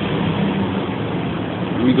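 Steady low mechanical hum over a constant background rumble, with no change through the pause.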